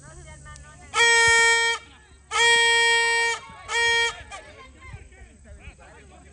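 A horn sounded in three loud blasts on one steady pitch: a blast of nearly a second, a longer one of about a second, then a short one. Faint voices from the field carry on underneath.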